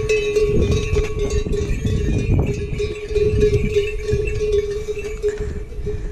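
The bell on a pack yak's neck clanks and rings steadily as the yak walks by, then fades near the end. A low rumble runs underneath.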